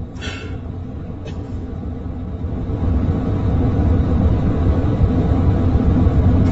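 Low, steady road rumble inside a moving car, picked up by a phone's microphone. It grows louder about halfway through, with a brief small click near the start.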